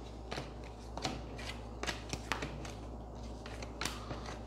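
Tarot cards being shuffled and handled by hand: a run of irregular light snaps and flicks of card stock.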